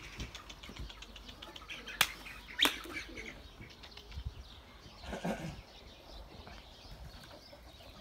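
A domestic pigeon taking flight, its wings flapping in quick beats, with two sharp clicks about two seconds in.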